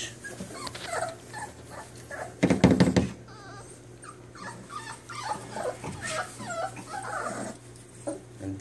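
Five-week-old bully puppies whining and squeaking in short, wavering cries, with a louder, lower sound about two and a half seconds in.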